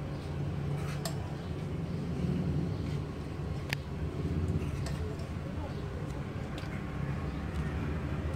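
A metal spoon clicking lightly against a metal cooking pot a few times as chicken masala is spooned onto the rice, the clearest click near the middle, over a steady low background rumble.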